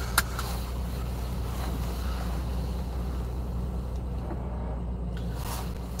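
Steady low hum of a car idling, heard from inside the cabin, with one short click just after the start.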